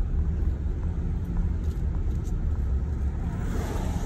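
Steady low rumble of a car driving slowly on a paved road, heard from inside the cabin: engine and tyre noise with no sudden events.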